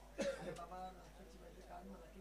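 A man clears his throat once, a sudden short rasp followed by a brief voiced sound.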